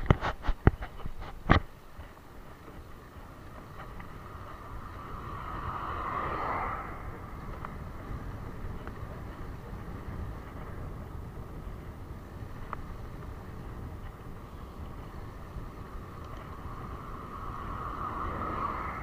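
Wind rushing over the microphone and road noise of a bicycle being ridden. A vehicle passes about six seconds in, building and fading away, and another approaches near the end. A few sharp clicks sound in the first two seconds.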